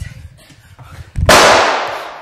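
A single loud, sharp bang about a second in that dies away over about a second, preceded by a few low thuds.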